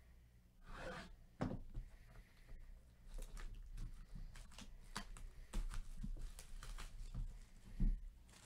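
Plastic shrink wrap being slit and peeled off a cardboard trading-card box, crackling in many short bursts, with light knocks of the box being handled and a louder thump near the end.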